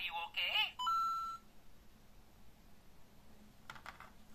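LEGO Super Mario interactive figure's small built-in speaker playing electronic sounds: a short warbling voice-like clip, then a steady beep about a second in. A couple of soft clicks near the end.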